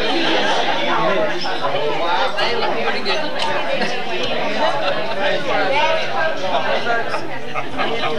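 Many people talking at once around dinner tables: a steady hubbub of overlapping conversation in a large room.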